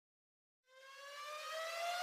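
Intro sound effect: after a moment of silence, a single tone fades in and glides slowly upward in pitch, growing louder.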